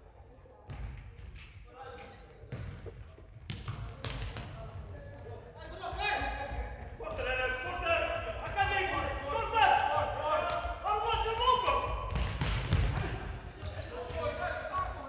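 A futsal ball being kicked and thudding on a sports-hall floor, with sharp knocks in the first few seconds. Players' voices call out over the play, growing louder from about six seconds in.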